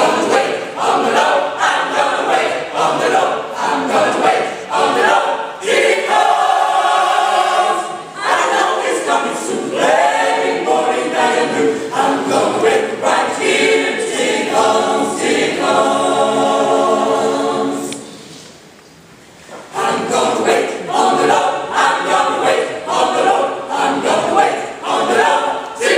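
Mixed gospel choir of men's and women's voices singing together, with long held chords. The singing drops away briefly about three-quarters of the way through, then comes back in.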